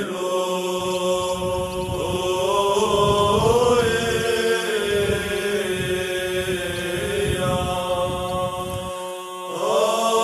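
Eastern Orthodox liturgical chant: a slow, drawn-out melody of long held sung notes gliding from one pitch to the next. Near the end the singing breaks off briefly and a new phrase begins.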